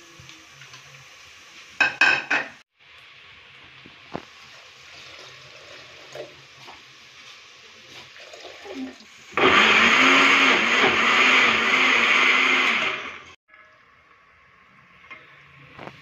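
Nowake electric blender grinding tomatoes, green chillies, garlic and ginger with a little water into a paste. The motor runs loudly for about four seconds in the second half and then cuts off. A short clatter comes about two seconds in.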